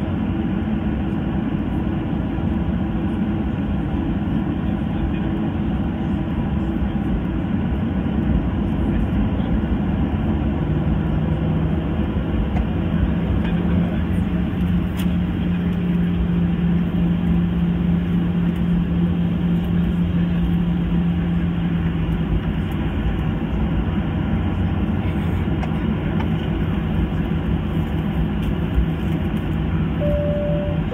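Steady cabin noise of a Boeing 737-800 taxiing, heard over the wing: its CFM56-7B turbofans at low thrust give a low, even hum under a broad rush. The hum's pitch steps down slightly about ten seconds in and holds there until a little past twenty seconds.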